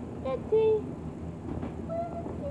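A person's voice making a short, wordless vocal sound about half a second in, over a low background rumble, with a faint held tone near the end.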